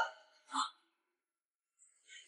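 The end of a woman's spoken line, then one brief vocal sound about half a second in, followed by dead silence.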